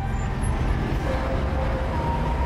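Steady road traffic: cars driving through a city intersection, an even rumble and tyre noise.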